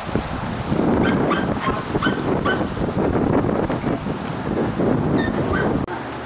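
A dog yapping about five times in quick succession, with a couple more yaps later on, over wind buffeting the microphone.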